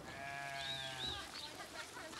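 A flock of sheep on the move: one sheep bleats a single long call lasting about a second near the start, with a few short high chirps above it and fainter calls after it.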